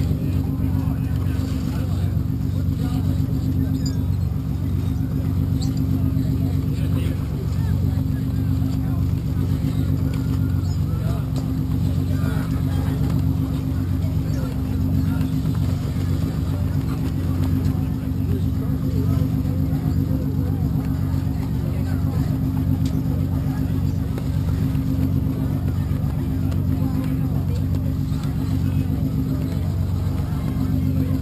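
Steady low drone of a running engine, even and unchanging in pitch.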